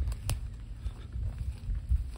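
Footsteps through long dry grass, with a few sharp crackles of stalks and a low rumble on the microphone.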